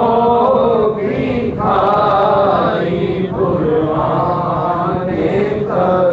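Male voices chanting an Urdu devotional naat through a microphone, in long drawn-out phrases of one to two seconds with short breaks between.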